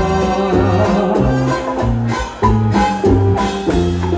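Live band playing Latin tropical dance music: bass, electric guitars, congas and drums in a steady rhythm, with a lead vocal on top.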